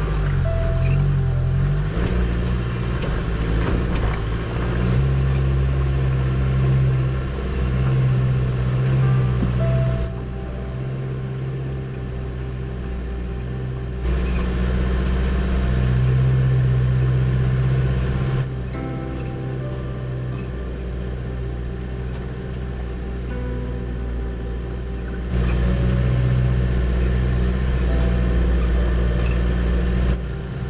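Toyota overland 4x4's engine running under load as it climbs a steep rocky track, a steady low drone whose loudness drops and jumps back abruptly several times, as between edited shots.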